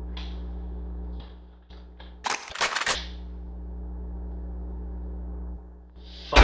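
A shotgun being racked: a quick cluster of sharp metallic clacks about two and a half seconds in, after a few lighter clicks, over a steady low electrical hum.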